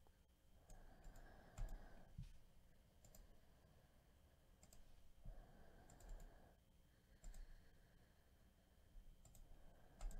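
Faint clicks of a computer mouse and keys, about seven single clicks spaced irregularly over a near-silent background.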